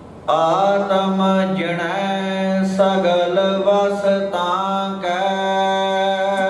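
Male voice chanting Gurbani into a microphone, over a steady drone. It starts suddenly just after the start, with long held notes.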